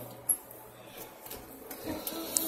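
A single sharp click a little way in, then faint rustling of handling.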